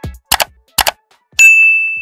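Sound effects of an animated subscribe button: a low falling thump at the start, two short clicks about half a second apart, then a bright bell ding about one and a half seconds in that rings on and slowly fades.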